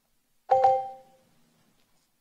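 A single electronic chime of two tones sounding together, starting about half a second in and dying away within about a second. It marks the start of a debater's 30-second timed turn.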